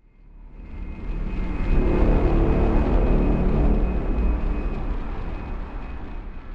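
Intro sound effect of a jet-like aircraft roar with a deep rumble and a thin steady high whine. It swells up over about two seconds, holds, then dies away near the end.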